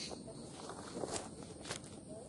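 Dry straw and stalks rustling and crackling, with a few sharp snaps, as someone pushes and steps through dry vegetation.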